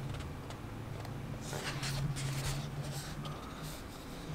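Faint rustling of comic-book pages being turned by hand, a few soft swishes in the middle and near the end, over a low steady hum.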